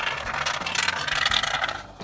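Can of expanding foam gap-and-crack sealant spraying foam through its straw tube in a steady hiss that stops near the end.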